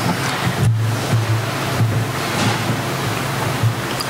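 A steady rushing wash of noise, like surf, over a low steady hum. It cuts off near the end.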